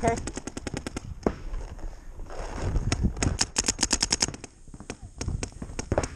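Paintball markers firing in rapid strings of sharp shots, about ten a second. One string comes at the start, then scattered single shots, then a dense burst about three seconds in.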